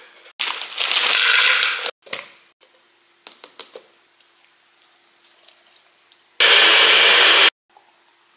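A personal blender running for about a second near the end, blending banana and blueberries into a smoothie; it starts and stops abruptly. Earlier, about half a second in, a loud rushing noise lasts about a second and a half, followed by a few light clicks.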